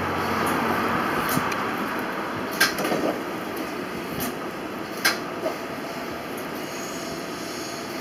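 Old forklift running as it is driven slowly, a steady mechanical rumble with two sharp knocks, about two and a half and five seconds in.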